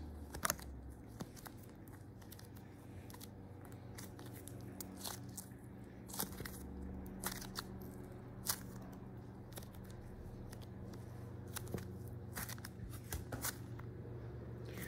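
Crayola Model Magic foam clay being kneaded and squeezed in the hand, giving scattered faint crackles and clicks over a low steady hum.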